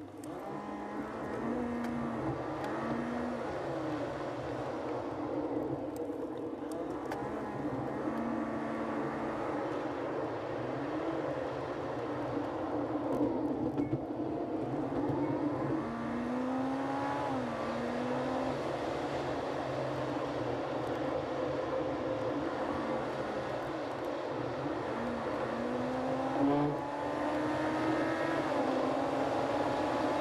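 Inside a car: steady engine and road noise, with the engine's pitch rising and dropping back several times as it accelerates and shifts up through the gears.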